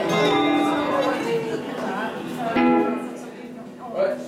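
Acoustic guitar strummed between songs: a chord rings at the start and another about two and a half seconds in.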